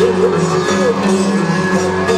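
A live band playing on stage through a PA, with electric guitars, keyboard and drums. Steady held notes run under short gliding melodic phrases, with no break.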